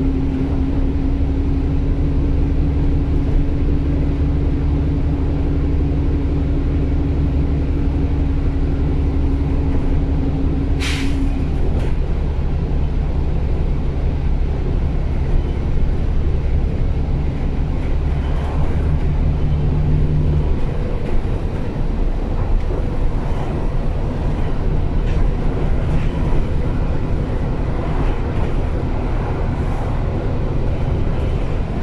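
Alexander Dennis Enviro400 double-decker bus under way, heard from the upper deck: a steady engine and drivetrain drone with a slowly rising tone that stops about a third of the way in. There is a short sharp hiss about 11 seconds in, and the engine note drops about two-thirds of the way through.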